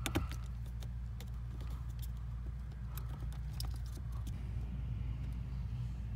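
Scattered plastic clicks and knocks of an OBD2 adapter being handled and pushed into the car's diagnostic port under the dashboard, the sharpest click right at the start, over a steady low hum.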